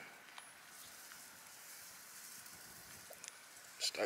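Faint steady outdoor background hiss, with a few faint clicks about three seconds in.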